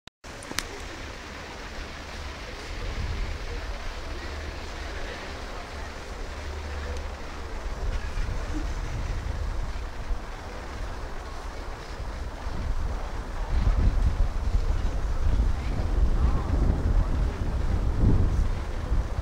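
Wind buffeting the camera microphone as a low, uneven rumble, growing stronger over the last few seconds.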